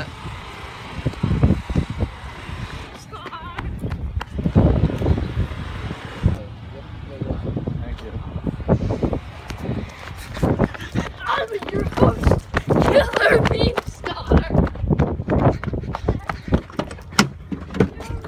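Rumbling and knocking handling noise from a phone being carried while walking, with indistinct voices mixed in, strongest about two-thirds of the way through.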